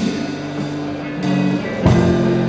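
Live band playing an instrumental stretch between vocal lines: guitars holding chords, with a sharp accent at the start and another just before the end.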